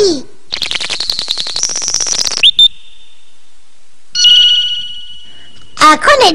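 Electronic cartoon gadget sound effects as the dials and keys of a red machine are worked. A fast ticking with a tone that steps up in pitch runs for about two seconds, then comes a short chirp. After a pause there is a steady electronic beep that fades out.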